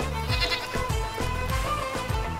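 Background music with a steady beat, and a goat bleating once briefly about half a second in.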